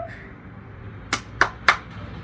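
Three sharp clicks about a third of a second apart, starting a little over a second in, over a low outdoor background.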